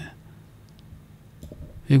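A quiet pause with a few faint, small clicks, a couple near the middle and another pair near the end. A man's voice starts up again right at the end.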